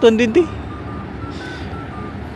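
A drink vending machine's electronic beeps: short high tones at a few slightly different pitches, in a slow jingle-like sequence over a steady low hum.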